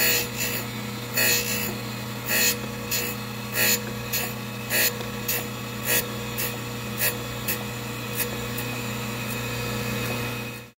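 Surface grinder running with a steady motor hum, its abrasive wheel grinding the edges of two hardened steel hand files in short grinding bursts that repeat about every half second as the table carries the work back and forth under the wheel.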